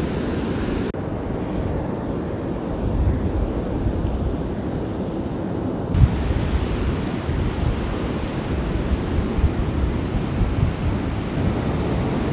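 Wind buffeting the microphone in low, uneven gusts over the steady wash of surf breaking on a beach. The higher hiss drops away for a few seconds from about a second in, then returns.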